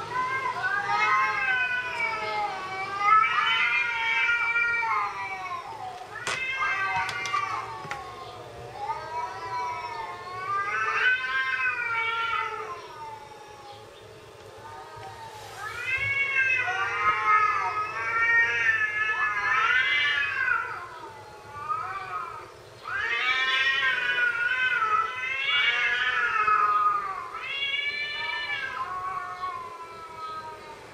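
Cats meowing and caterwauling: a nearly unbroken run of long, wavering calls that rise and fall in pitch, with short lulls around the middle and about two-thirds of the way through.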